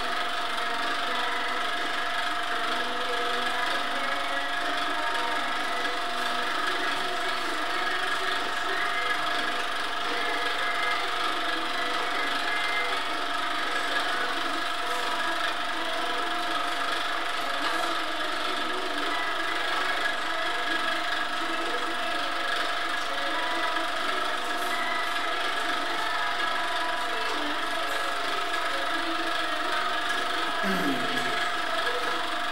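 Steady machine hum with several steady tones, unchanging in level.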